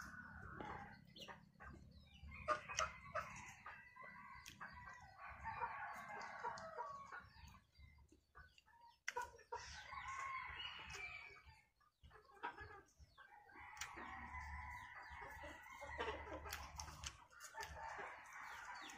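Domestic chickens clucking and calling faintly, in several stretches of a second or two.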